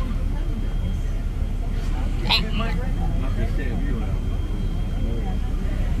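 Steady low rumble of a moving bus heard from inside the cabin, with faint voices in the background.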